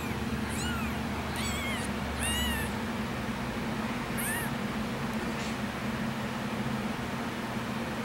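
A kitten under two weeks old mewing: four or five short, thin, high-pitched mews, each rising and falling, in the first half, the last about four seconds in.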